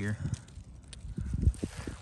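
Footsteps on the forest floor: a few dull thumps in the second half, the loudest about one and a half seconds in.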